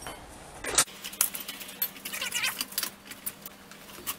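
Light metallic clinks and rattles of steel parts being handled as a spacer is set back in place against a steel square-tube frame, a quick scattered run of small clicks through the middle.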